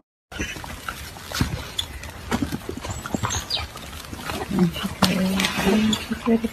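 A litter of golden retriever puppies grunting, squeaking and growling while they tug at a chew, with small knocks and mouthing noises. From about four and a half seconds in, a longer low growl-like sound runs on.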